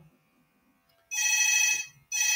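Phone ringtone: one steady electronic ring of several pitches at once, starting about a second in and lasting under a second.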